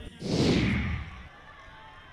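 A whoosh transition sound effect: one noisy sweep that falls in pitch and fades after about a second, followed by low background noise.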